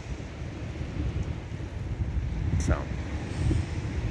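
Wind buffeting the camera's microphone, an uneven low rumble.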